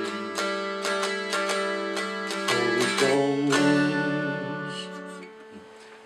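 Homemade walnut mountain dulcimer playing the instrumental close of a song: a run of plucked notes over a steady low drone, then a final strum a little over three and a half seconds in that rings out and fades away.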